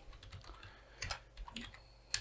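Faint, irregular keystrokes on a computer keyboard, a few taps typing out a word.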